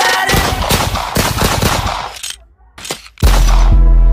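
Rapid machine-gun fire used as a sound effect in a hip-hop track, tailing off about two seconds in. After a brief near-silent break, the beat drops with heavy bass just after three seconds in.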